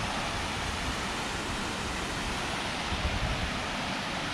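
Water pouring over a concrete check dam into a rocky stream: a steady rushing sound.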